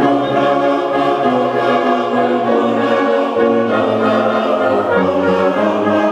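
Brass band of trumpets, euphoniums and tubas playing a slow passage of held chords that change every second or two.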